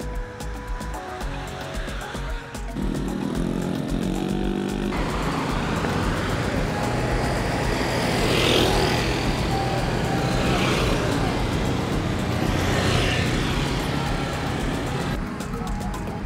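Busy street traffic of cars and motorbikes, with three louder swells in the middle as vehicles pass close by. Background music with a beat is heard, most plainly in the first few seconds.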